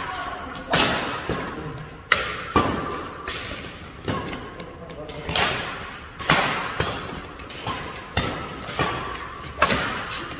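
Badminton rackets striking the shuttlecock back and forth in a fast rally, about a dozen sharp cracks spaced roughly half a second to a second and a half apart, each echoing briefly in a large hall.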